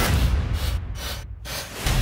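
Cinematic trailer sound design: a deep low boom and rumble that dies away to a brief lull a little over a second in, then swells back loudly just before the end.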